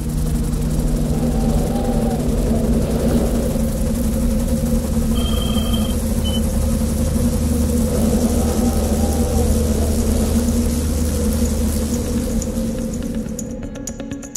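Helicopter turbine and rotor sound, a steady low droning rumble with several held hums that swells in at the start and eases off near the end.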